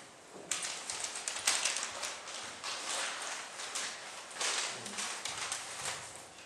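A small audience clapping, starting about half a second in, thinning briefly in the middle and dying away near the end.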